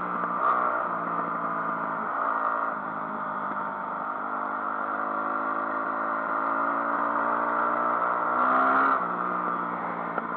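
Enduro motorcycle engine running under load, heard from the bike itself, its pitch rising and falling in steps several times as the throttle is worked.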